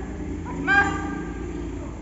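A high-pitched voice calls out once, a loud call held for about a second: a karate performer announcing her kata at the formal bow before starting.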